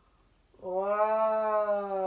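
A long drawn-out cry held on one steady pitch, starting about half a second in and sagging slightly in pitch toward the end.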